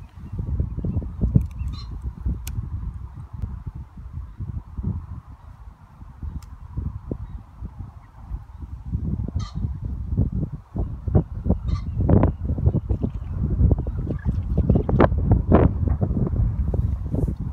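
Low, irregular rumbling of wind buffeting the microphone outdoors. A few short, louder sounds stand out in the second half, about twelve and fifteen seconds in.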